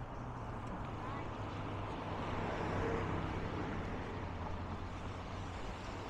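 Road traffic on an urban seafront road, with a vehicle passing that swells loudest about three seconds in.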